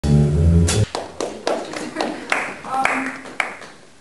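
A jazz group with piano, bass and drums plays a loud final chord that stops abruptly just under a second in. Scattered sharp strikes follow, several of them leaving cymbal ringing, and die away toward the end.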